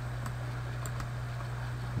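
A few faint clicks from working a computer over a steady low electrical hum.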